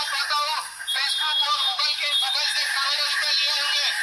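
A man's voice shouting through a microphone and loudspeaker, tinny and distorted with no low end, with a thin steady high whine in the background for part of it.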